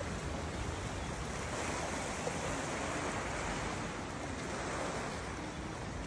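Sea washing against the rocks of a small harbour, a steady rush.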